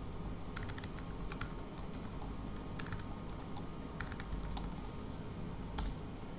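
Typing on a computer keyboard: a few short runs of key presses, ending in a louder click, over a low steady hum.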